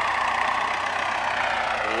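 MTZ-80 tractor's four-cylinder diesel engine running steadily as its front loader lifts a round hay bale.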